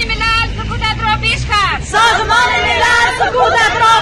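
A group of women shouting protest slogans together, loud overlapping voices with calls that slide down in pitch, over a low rumble in the first half.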